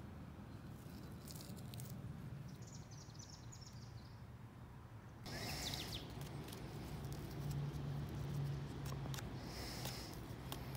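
Quiet outdoor ambience with faint, short bird chirps, heard in small clusters, over a steady low hum; the background gets a little louder about five seconds in.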